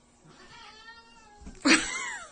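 Domestic cat vocalizing: a drawn-out meow about a second long, then a louder, harsher yowl near the end that falls in pitch.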